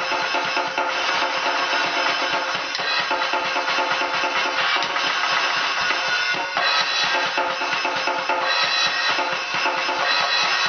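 Electronic drum kit played with sticks in a fast, busy improvised groove, rapid strokes on the snare pad and toms with kick and cymbal hits mixed in, without a break.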